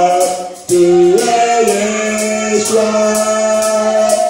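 Several voices singing together in long held notes, worship singing, with a brief break between phrases just under a second in. A steady beat of sharp ticks, about two a second, runs underneath.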